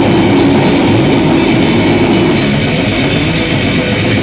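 Death metal band playing live at full volume: dense distorted guitars over fast, rapid-fire drumming.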